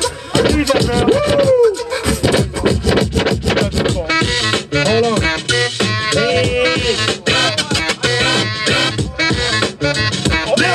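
A DJ scratching a record on a turntable over a hip-hop beat. The scratches sweep up and down in pitch, in runs about a second in and again around five to seven seconds in.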